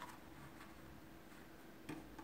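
Near silence with a few faint clicks as a shoemaking knife cuts the leather lining allowance along the edge of a shoe upper; a slightly louder click comes near the end.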